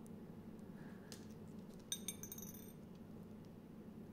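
A single light metallic clink about two seconds in that rings briefly, with a fainter click a second earlier, as a small metal tool and a slot car chassis are handled on a workbench. Under it, a low steady room hum.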